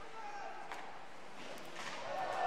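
Faint ice hockey rink ambience during play: a steady background hiss with a few light clacks of sticks or puck on the ice, and faint voices in the background.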